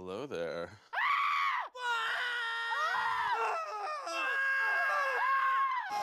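A man screaming: a brief vocal sound at the start, then a long, loud scream from about a second in that is held and wavers in pitch.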